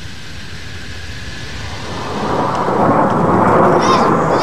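Military jet aircraft flying overhead: a steady rushing roar of jet noise that swells louder about halfway through.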